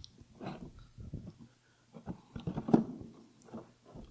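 Wooden hive frames being shifted and lifted in a wooden hive box: irregular knocks and scrapes of wood on wood, the loudest about two and a half seconds in.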